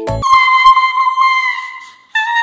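The children's song breaks off just after the start, and a single high whistle-like tone is held, wavering slightly, then fades away near the end.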